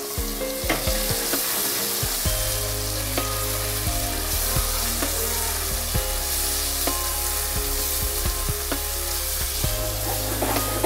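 Tomatoes and onions sizzling in hot oil in an aluminium pressure cooker, stirred with a spatula that knocks and scrapes against the pot many times.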